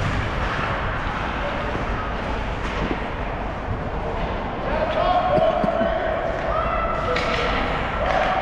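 Ice hockey game sounds in an echoing arena: sticks and puck clacking against the ice and boards. From about halfway, voices in the stands hold long drawn-out shouts, which are the loudest sound.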